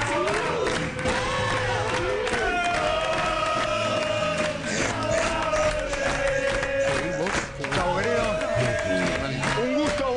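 Loud studio music with long held notes over a steady beat, mixed with a studio audience cheering and clapping.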